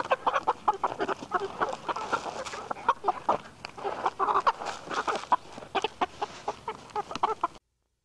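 Several hens clucking and pecking at a sneaker and its lace: a rapid, irregular run of short clucks and taps that stops suddenly near the end.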